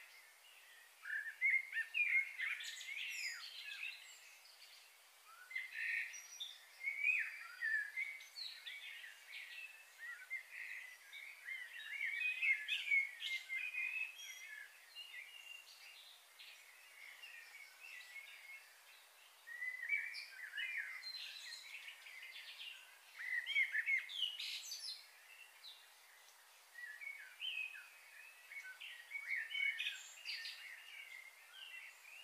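Small birds chirping and singing in bouts of a few seconds, with short pauses between.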